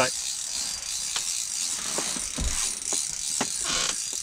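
Spinning reel on a short ice-fishing rod ratcheting steadily while a hooked fish is fought, with a few sharp clicks and knocks.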